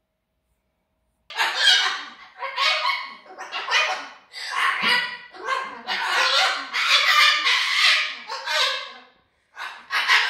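A cockatoo calling loudly in a rapid run of harsh calls, starting about a second in, with a brief break near the end. This is the bird's angry outburst.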